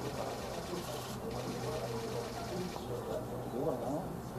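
Low, indistinct voices of several people talking in the background, over a steady low hum.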